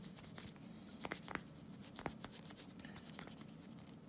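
Cotton makeup pad rubbing polish into a stainless-steel watch case by hand: a faint, scratchy rubbing with a few light clicks scattered through it.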